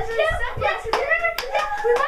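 Hand claps, with two sharp claps about a second in, over boys' voices.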